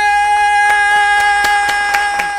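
A man holding one long, high vocal note at a steady pitch while clapping his hands in a steady beat, about four claps a second.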